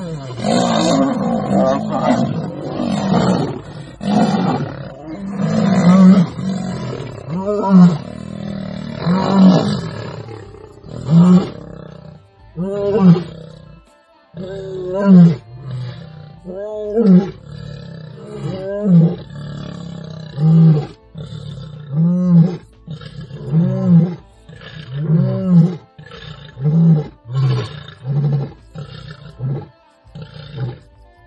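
Male lion roaring: dense, overlapping growling calls at first, then a long series of deep grunting roars about every second and a half, coming a little closer together toward the end.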